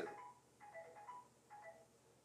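Faint background music of short, soft pitched notes in two small groups about a second apart.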